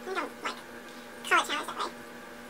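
A cat meowing twice, about a second apart, the second call longer, with its pitch sliding down.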